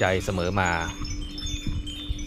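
Wind chimes ringing in the background, several high tones overlapping. A man speaks during the first second.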